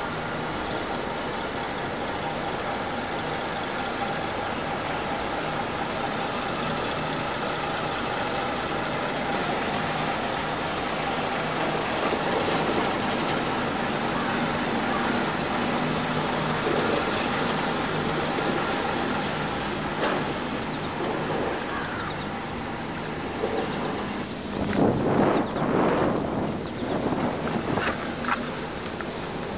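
Ikarus bus diesel engine running as the bus manoeuvres and drives off, with a few short air hisses. It grows louder and rougher near the end as the bus comes close.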